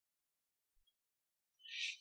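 Near silence, then about one and a half seconds in a short breath drawn in through the mouth, a soft hiss leading into speech.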